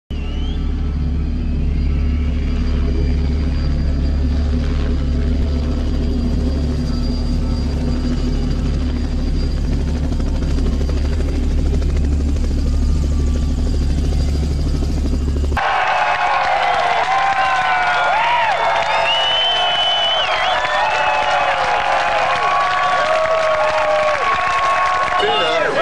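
Helicopter running with a steady low rumble. About two-thirds of the way in it cuts suddenly to a large crowd shouting and cheering, many voices rising and falling.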